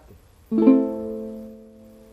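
A Venezuelan cuatro strummed in an A minor chord: one strum about half a second in, the chord ringing and fading away.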